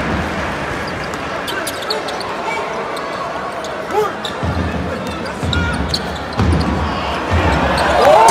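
Crowd chatter in a large basketball arena, with a basketball bouncing on the hardwood court and sharp knocks from play.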